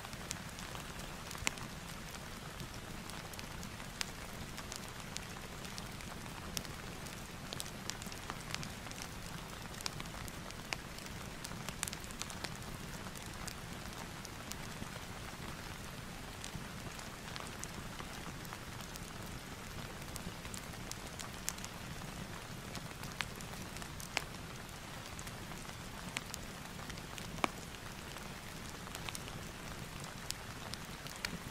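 Steady rain ambience with a fireplace crackling in it: an even hiss of rain with sharp pops scattered at irregular moments.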